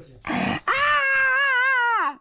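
A long, high-pitched whine from a voice, held steady for over a second with a slight waver and dropping in pitch at the end, after a short breathy burst.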